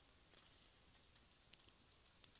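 Near silence with faint, light ticks and scratches of a stylus writing a word on a pen tablet.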